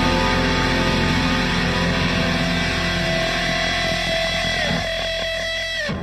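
Progressive rock-metal band music with guitars, dense and loud. Near the end it breaks into short repeated hits and then stops abruptly.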